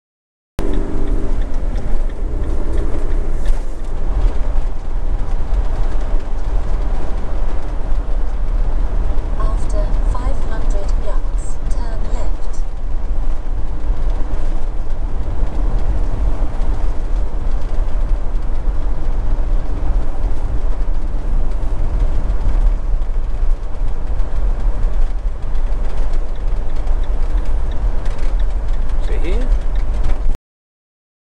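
Bailey motorhome driving at road speed, heard from inside the cab: steady engine and tyre noise with a heavy low rumble.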